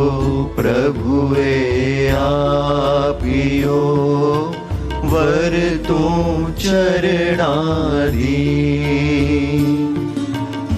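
Two men singing a slow Jain devotional chant in long, drawn-out melodic phrases, over a steady low drone.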